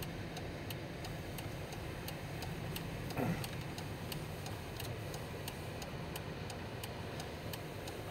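Steady ticking of a Dodge's turn-signal indicator in the car's cabin, about three ticks a second, over the low, even hum of the running engine and road.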